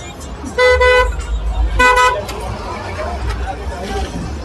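A vehicle horn honks twice, two short toots a little over a second apart, the first slightly longer than the second.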